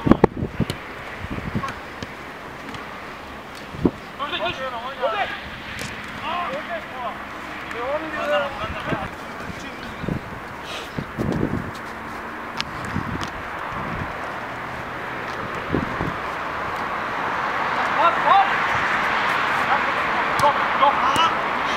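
Players calling out on a small-sided artificial-turf football pitch, with a few dull thuds of the ball being kicked, over wind noise on the microphone that grows toward the end.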